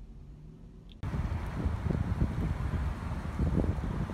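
Wind buffeting a handheld phone microphone outdoors: a gusty, uneven low rumble that starts abruptly about a second in, after a brief faint hum inside a parked car.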